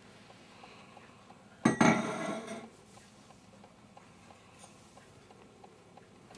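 A brass oil lamp set down on a wooden table: one sharp metallic clink with a quick double hit and a short ring, nearly two seconds in.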